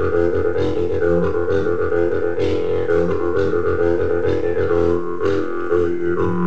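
Jew's harp played with a steady low drone. The player's mouth shapes shifting overtone melodies above the drone, and the reed is plucked again and again.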